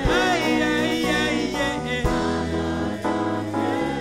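Gospel praise music: a choir singing with instrumental accompaniment.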